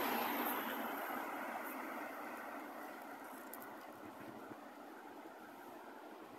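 A car driving past close by: its engine and tyre noise is loudest at the start and fades over a few seconds as it moves away, leaving a lower steady hum of traffic.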